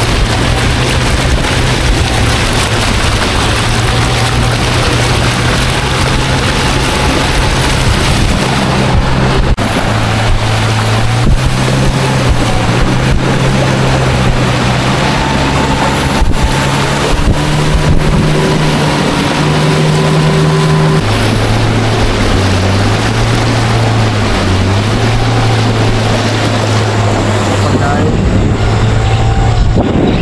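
A small river boat's motor running steadily under way, over a constant hiss of water and wind. Its pitch climbs past the middle, then drops sharply and holds lower.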